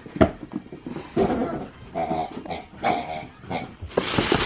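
A pet dog making three short whining grunts about a second apart, after a sharp knock near the start.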